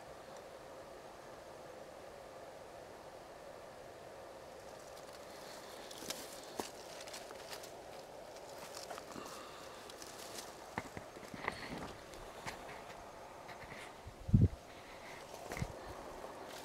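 Handling and rustling noises: the camera being moved against clothing and the man's movements in dry leaves and brush, with scattered small clicks and a dull thump a couple of seconds before the end, as from the camera being bumped or set down.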